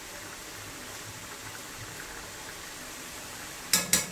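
Steady low hiss of kefta cooking in a steel pot and rice boiling on a gas stove. Near the end, two sharp clinks close together from a metal spoon knocked against the pot.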